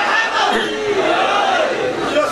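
A crowd of men shouting together, many voices overlapping in loud, drawn-out calls.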